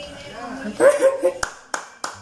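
A man laughing out loud, then two sharp hand claps about a third of a second apart near the end.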